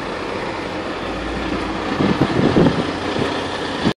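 Car-carrier semi-truck's diesel engine running steadily, with a few uneven louder rumbles in the second half.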